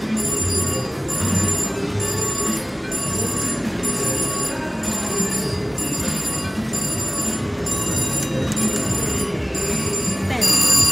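Casino slot machine sounds as a VGT mechanical-reel slot spins: bell-like electronic ringing tones pulse in an even rhythm, about three pulses every two seconds, over the hum of the casino floor.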